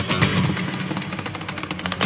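Amplified steel-string acoustic guitar played fingerstyle: plucked notes with a steady bass line and many sharp attacks, growing quieter in the second half.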